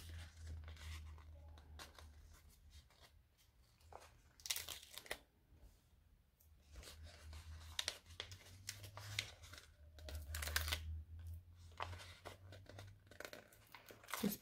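Planner sticker sheet being flexed and stickers peeled off their backing paper: faint papery crinkling and tearing rustles in short bursts, the loudest about four and a half seconds in, over a low steady hum.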